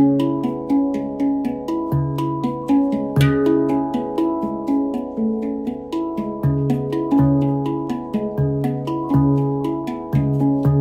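Steel handpan played by hand: a flowing run of struck, ringing notes, several a second, with a deep centre note sounding again and again beneath them.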